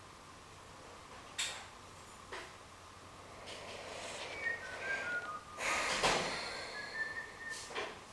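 A run of short whistle-like notes stepping up and down in pitch through the second half, over a faint steady high tone, with a few soft knocks.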